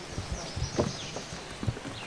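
Footsteps on a wooden footbridge: shoes knocking on the plank boards, about six uneven steps with a hollow, clip-clop quality.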